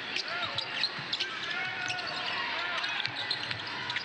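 Basketball being dribbled on a hardwood court, with scattered short squeaks of sneakers on the floor over a steady arena crowd murmur.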